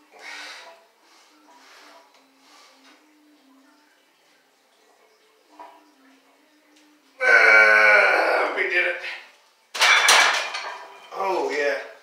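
A weightlifter pushing through a heavy barbell bench-press set: faint breaths over the first reps, then a loud drawn-out straining yell about seven seconds in. About ten seconds in the loaded steel barbell clanks back into the rack's hooks, followed by heavy breathing.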